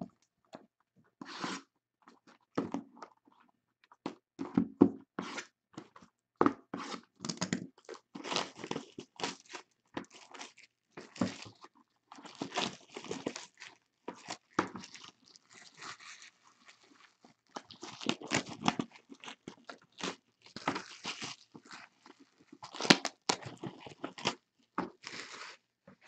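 Clear plastic shrink-wrap being torn off and crumpled by hand while cardboard boxes of trading-card packs are handled: irregular crackling and rustling, in short bursts with brief pauses between them.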